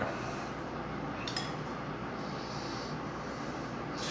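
Spoon spreading tomato sauce over pizza dough in a pan: quiet, soft rubbing and scraping, with a small click about a second in.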